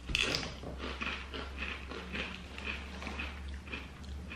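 Someone biting into and chewing crunchy wavy potato chips: one sharper crunch at the start, then a run of small crisp crunches about three times a second.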